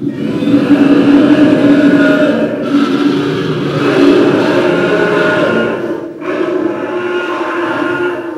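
Animatronic Iguanodon's recorded roar played through its speaker: a long, loud, pitched call in two parts, dipping briefly about six seconds in.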